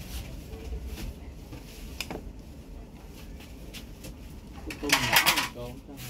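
Quiet room noise with a low rumble and a few faint clicks, then a voice speaks a short Vietnamese word ("tôm", shrimp) near the end.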